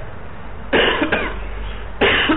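A person coughing: one sudden harsh cough about three-quarters of a second in, fading over the following second, over a low steady hum.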